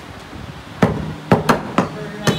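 Meat cleavers chopping beef on wooden chopping blocks: four sharp chops in the second half, the first about 0.8 seconds in and the rest closer together.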